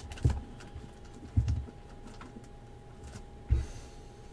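Three dull thumps of hands and cardboard boxes handled on a mat-covered tabletop, with a few light handling clicks between them.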